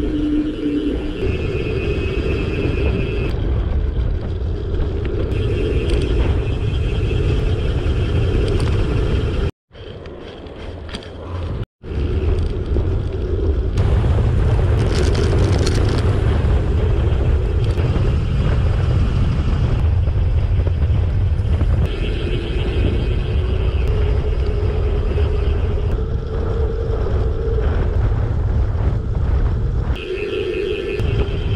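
Wind buffeting the microphone and the rumble of bicycle tyres on asphalt as a gravel bike rolls along at speed. The sound cuts out briefly twice, about a third of the way in.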